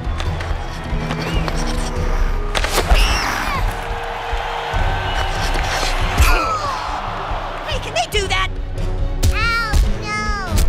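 Cartoon soundtrack of background music and arena crowd noise, with a few short wailing cries that rise and fall in pitch near the end.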